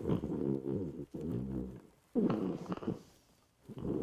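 A man laughing into a bed's blanket, muffled, in four bursts of about a second each.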